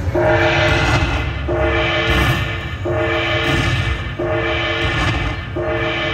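Dragon Link slot machine tallying a bonus win: a bright chord of held tones that repeats about every one and a half seconds as each prize value is counted into the win meter, over steady background noise.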